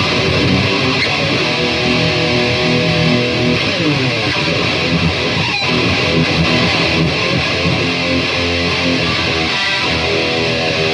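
Dean ML electric guitar played through an amp, ringing out sustained notes and chords, with a falling pitch glide about four seconds in.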